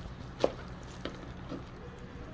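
Kitchen knife cutting oyster mushrooms away from a plastic growing crate: one sharp click about half a second in, then two lighter clicks.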